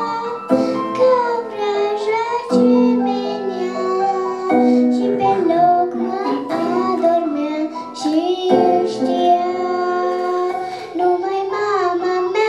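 A young girl singing a melody into a microphone over instrumental accompaniment, in sustained, gliding phrases with short breaks between them.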